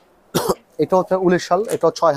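A single short cough about half a second in, followed by a man speaking.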